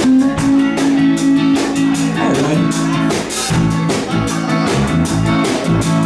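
Live rock band playing an instrumental passage without vocals: electric guitar, electric bass and drum kit with a steady beat.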